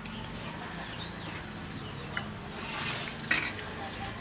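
Metal spoons clinking and scraping on plates during eating, with a sharp clink a little over three seconds in, the loudest sound, and a smaller one about two seconds in.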